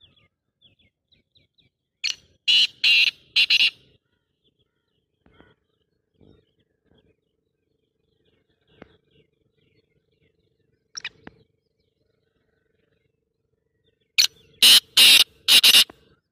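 A francolin (teetar) calling twice: each call is a loud, harsh phrase of about four shrill notes in quick succession, one near the start and one at the end, with a short single note in between.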